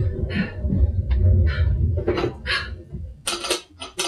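Footsteps and movement across a stage floor, then a few sharp clicks and rattles near the end as a telephone receiver is picked up.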